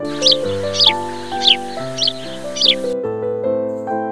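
Five short, falling bird calls, about one every half second, over a background hiss that cuts off suddenly about three seconds in. Piano-like background music plays throughout.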